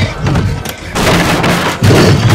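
Horror film soundtrack: a low, dark score with a long burst of noise, a heavy crash-like impact, from about halfway through, then the low rumble surging back near the end.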